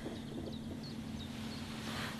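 Birds chirping outside, short high chirps several times a second, over a steady low hum.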